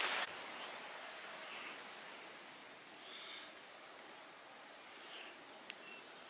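Faint outdoor background hiss with a few distant bird calls, after a brief rustle on the microphone at the very start; a single short click near the end.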